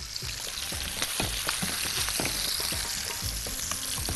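Chicken drumsticks sizzling steadily in hot oil in a frying pan as they are browned, with scattered light clicks and knocks as the pieces are handled.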